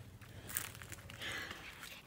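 Faint rustling and light footsteps, with a few soft clicks.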